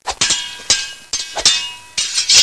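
A run of sharp, irregular clanging hits with short ringing, several a second.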